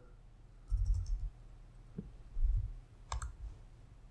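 Computer keyboard keystrokes as a search is typed and entered: a few quiet clicks with dull low thumps, and one sharper click a little after three seconds in.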